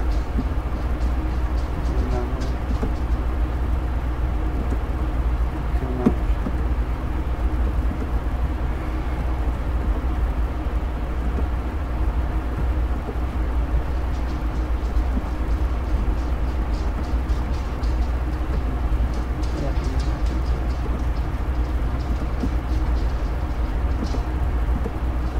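A steady low rumble and hum, like noise on an open broadcast line, with faint, indistinct voices in the background now and then and a single click about six seconds in.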